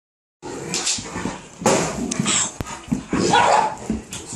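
A Great Dane barking several times in loud, sharp bursts while racing around the room with zoomies.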